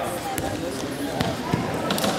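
About four sharp, irregularly spaced thuds ringing in a large gymnasium hall, over the murmur of people talking.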